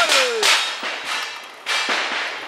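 Sharp cracks with ringing tails: one at the start, another about half a second in, then a fainter one and a last one near the end.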